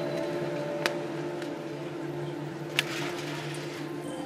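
A steady low hum of held tones, broken by a few sharp clicks, one about a second in and a louder one near three seconds in.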